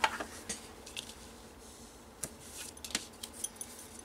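Double-sided score tape and cardstock being handled on a table as the tape is laid along the card's edge: scattered light clicks and taps over a faint hiss.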